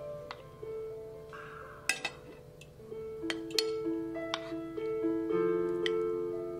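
Background piano music with held notes, over which a metal serving spoon clinks a few times against a ceramic baking dish and plate as cassoulet is scooped out; the sharpest clink comes about two seconds in.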